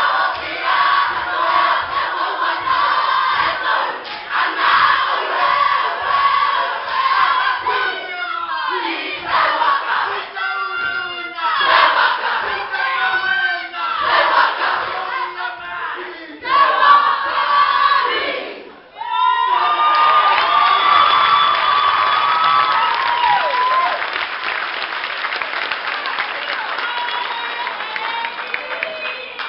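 A haka: a large group of young male voices chanting and shouting in unison, in phrases broken by short pauses. About two-thirds of the way in the chant stops and loud cheering and screaming from the audience takes over.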